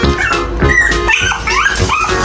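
A small dog whining and yipping in short rising and falling cries, over background music.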